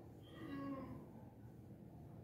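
Faint low humming or murmuring of a person's voice, drawn out through the first second, over quiet room tone.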